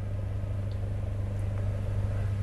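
Steady low electrical hum with a faint rumble beneath it: the studio's background noise.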